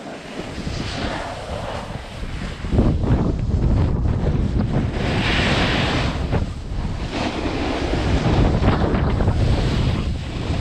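Wind buffeting a body-worn camera's microphone as a rider picks up speed down a ski slope. It gets louder and more rumbling about three seconds in, under the steady hiss of sliding on snow.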